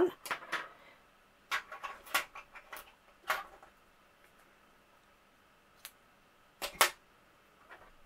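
Scattered short clicks and taps from hands at work: yarn being cut with scissors and a 5 mm crochet hook set down on a table. The loudest sound is a close pair of sharp clicks about seven seconds in.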